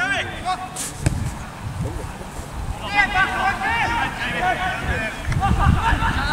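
Voices shouting out on a football pitch, most of them in a burst around the middle, with a sharp knock about a second in and occasional low rumbles on the microphone.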